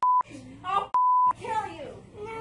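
Two short, steady censor bleeps, one at the start and one about a second in, cutting over a woman's shouted words, with her yelling voice between them.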